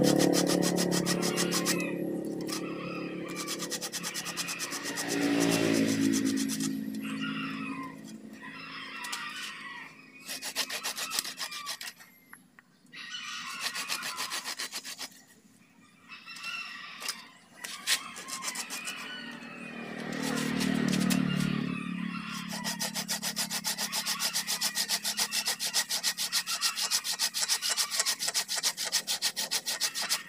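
Hand saw cutting through a bougainvillea trunk and its woody roots, quick back-and-forth rasping strokes with brief pauses in the middle. A louder low-pitched sound swells and fades in the background near the start, about five seconds in and again about two-thirds through.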